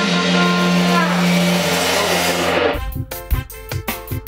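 A live reggae band holding a final chord, with sustained notes over a ringing cymbal wash. About three-quarters of the way through it is cut off abruptly by a different music track with sharp, regular beats.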